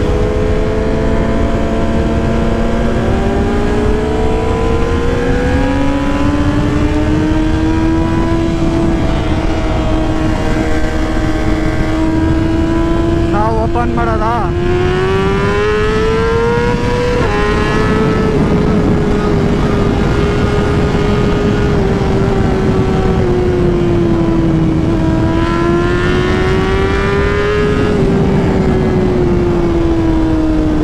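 A motorcycle engine running at road speed under heavy wind rush. Its pitch climbs gradually, rises again about halfway through, then dips slightly and settles.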